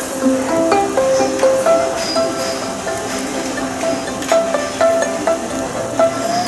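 Background music: a melody of separate plucked-string notes, each starting sharply and fading, played on gayageum, the Korean zither.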